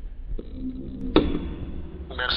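Short whoosh sound effect about a second in, the kind laid over a cut between shots, over a faint steady low hum.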